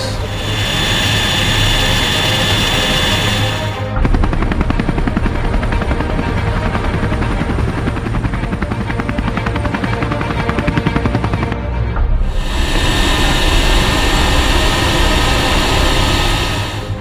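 Military transport helicopter in flight: a fast, even rotor chop through the middle stretch, with a loud hissing rush of turbine and wind noise at the start and again for the last few seconds.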